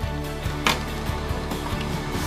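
Background music with steady low notes, over the crinkle of a thin plastic toy bag as the toy is pulled out of it, with one sharp crackle about a third of the way in.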